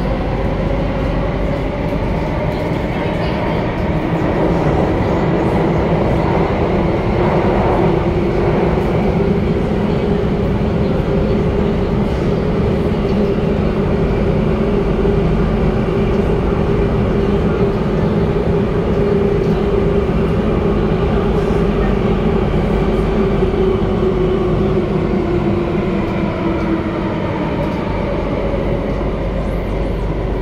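SMRT Circle Line C830C metro train running through a tunnel, heard from inside the car: a steady rumble of wheels on rail under a motor whine. The whine holds through most of the stretch and fades near the end.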